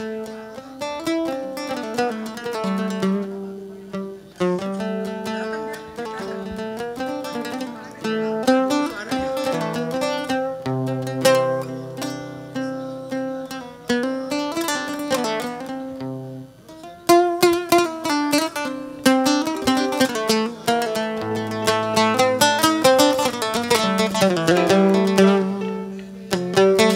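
A gambus ensemble playing an instrumental passage led by a plucked oud, with held low bass notes underneath and no singing. About 17 seconds in the playing becomes louder and busier.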